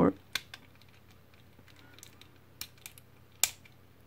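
A few scattered sharp clicks and taps of hard plastic as a sharp blade works at the parts of an Omnigonix Spinout action figure, the loudest about three and a half seconds in.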